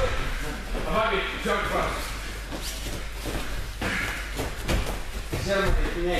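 Indistinct voices in a large, echoing hall, with one short sharp knock or slap about four seconds in.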